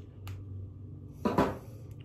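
A single sharp snip of small scissors cutting through the leathery shell of a ball python egg, then a short, louder burst of noise about a second and a half in, over a low steady hum.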